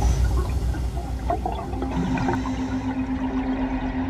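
Water rushing and bubbling, heard underwater, with a steady low tone joining about halfway through.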